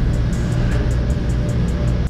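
Background music with a heavy, steady bass and a quick, even ticking beat on top, with no vocals. It cuts off abruptly at the end.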